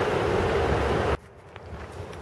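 Steady rush of wind on the microphone mixed with street traffic, cutting off suddenly about a second in to faint, quieter outdoor ambience.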